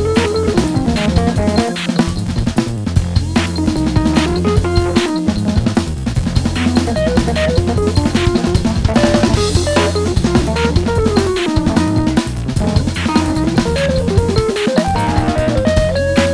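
Live band playing: a busy drum kit with snare, cymbals and bass drum, a low bass line, and a melody line moving up and down in pitch over the top.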